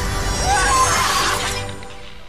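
Film soundtrack: loud score music with a shattering crash over it, easing off near the end.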